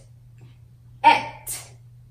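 A woman sounding out the isolated consonant /t/ about a second in: a short 'tuh' burst followed by a brief breathy hiss, repeating the same sound made just before.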